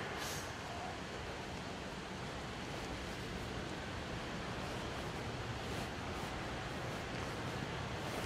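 Steady background noise of a large hall with no one speaking, an even hiss without distinct events.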